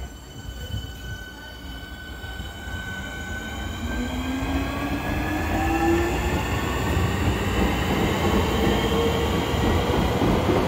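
Electric multiple-unit train pulling away and accelerating. Its traction motors whine in several tones that rise steadily in pitch, over a rumble that grows louder as the train passes close.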